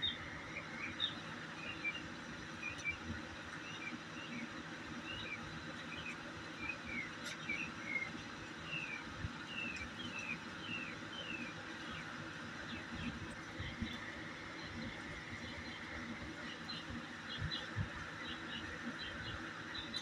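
Small birds chirping in a long series of short, falling notes, with a few soft thumps from two dogs play-fighting.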